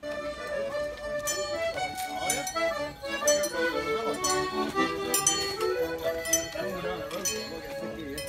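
A button accordion playing a lively traditional folk dance tune, melody and chords moving in steps, heard up close as the player walks. It starts abruptly, with occasional sharp clinks over the music.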